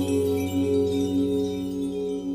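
Intro music of sustained, ringing bell-like tones, several pitches held together, each wavering in a slow pulse a few times a second and gradually fading.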